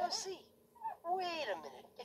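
A cartoon Smurf's high-pitched voice making short wordless exclamations with swooping pitch, three in a row, played through a portable DVD player's small speaker.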